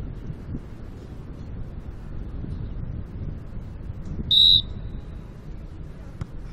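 Steady low outdoor rumble, like wind on the microphone, broken once about four and a half seconds in by a short, loud, high-pitched beep.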